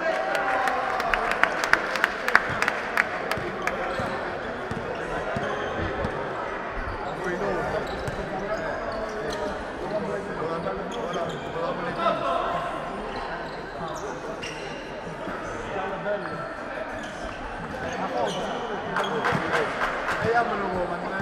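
Basketball game sounds in a large hall: the ball bouncing on the court and sharp knocks, clustered a second or two in and again near the end, over players' and spectators' voices.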